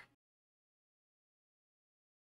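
Near silence: dead, gated digital silence just after the tail of a spoken word.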